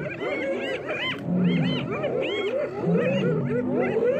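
A pack of spotted hyenas calling all at once while mobbing lions: a dense tangle of many overlapping short cries that rise and fall in pitch. Short, low, steady calls break through it about one and a half seconds in and again about three seconds in.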